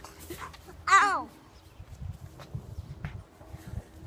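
A single short, high-pitched cry about a second in, its pitch falling steeply, over faint low rumble and light handling noise.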